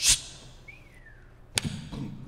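Radio-play sound effects for a sandwich thrown into a trash can: a short sharp swish at the start, a faint falling whistle, then a second hit about a second and a half in.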